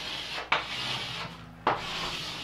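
Chalk drawn across a chalkboard in three scraping strokes, each a line of a rectangle being drawn. The strokes come at the start, about half a second in and near the end.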